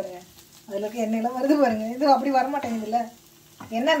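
Food frying in a pan with a faint sizzle, under a woman talking in Tamil. Her voice is the loudest sound and pauses twice briefly.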